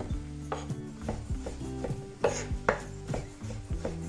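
Kitchen knife slicing and chopping champignon mushrooms on a wooden cutting board, with about three knife strikes a second; the two loudest come a little past halfway.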